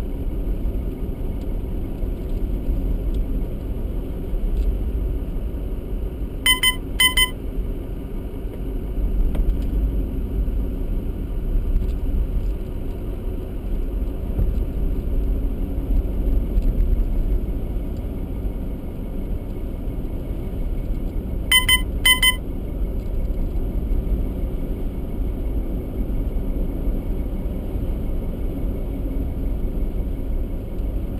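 Steady low rumble of a car's engine and tyres while driving. An electronic beep sounds twice in quick succession about a fifth of the way in, and again about two-thirds of the way in.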